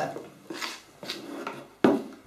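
A spoon scraping a few times through thick spinach sponge batter in a plastic mixing bowl, then one sharp knock near the end as the bowl is set down on the table.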